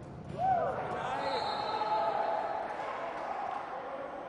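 Indoor futsal in play: the ball and players' shoes on the hard court, with players' calls, echoing in a sports hall. It gets louder about half a second in.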